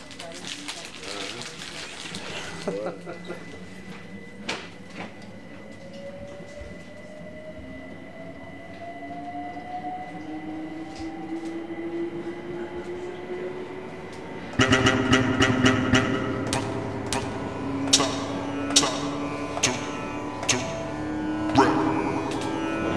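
Inside a London Overground electric train carriage as it pulls away, its motor whine rising slowly in pitch over the running rumble. About two-thirds of the way in, music from an Akai MPC500 sampler cuts in loudly, with sustained sampled tones and sharp percussive hits.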